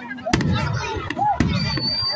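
Aerial fireworks shells bursting: two sharp bangs about a second apart, with fainter crackles between them.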